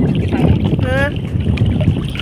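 Wind buffeting the microphone over open water, a steady low rumble that rises and falls. About a second in comes one brief, high, voice-like call.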